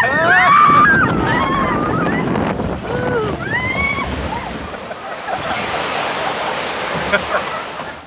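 Riders screaming and yelling in rising and falling cries as a log-flume boat runs down its drop, then water rushing and splashing around the boat from about halfway on, with wind buffeting the microphone.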